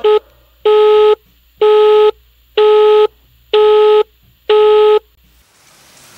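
Telephone busy tone: one steady beep, half a second on and half a second off. After a clipped first beep come five full ones, and then it stops. The called line is engaged, so the call does not get through.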